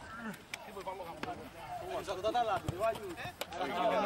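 Several men's voices talking over one another, with a few sharp hand slaps from players high-fiving each other in a line.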